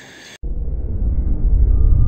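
A cinematic intro sound effect: a deep rumble that cuts in abruptly about half a second in and slowly grows louder, with a faint steady high tone over it.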